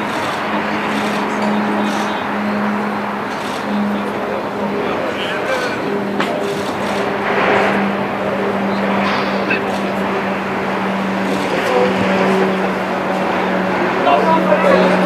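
Distant shouts and calls of footballers during a warm-up drill over a steady, engine-like low hum and a constant outdoor noise haze.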